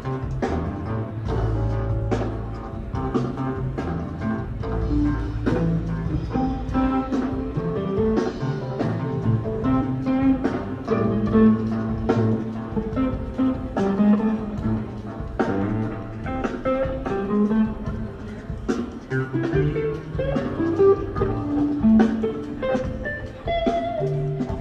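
Rock band playing an instrumental jam, with electric guitar and bass over steady drums, captured on an audience recording.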